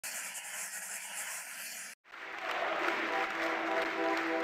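A steady rush of noise that cuts off abruptly about two seconds in. Then crowd applause swells up, and soft, sustained music notes join over it.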